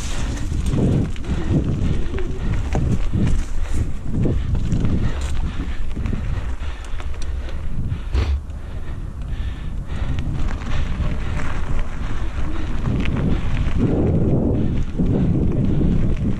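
Wind buffeting a bike-mounted action-camera microphone as a Giant Talon mountain bike is ridden over a dirt trail and then a road. The bike's frame and drivetrain give irregular knocks and rattles over the bumps.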